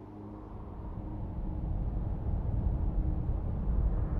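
A low, noisy rumble that swells steadily louder.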